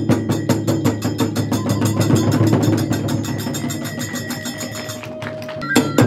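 Kagura hayashi accompaniment: fast, even drum and hand-cymbal strokes, about five a second, under a held flute line. The beat thins out and softens near the end, then resumes with a loud stroke.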